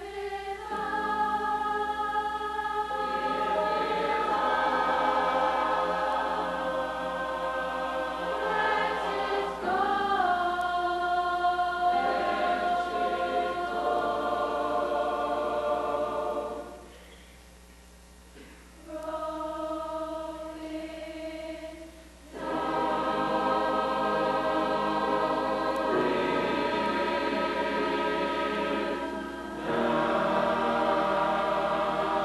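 Mixed high school choir singing in harmony, holding long chords. The singing breaks off for about two seconds past the middle, comes back quieter, then returns at full strength.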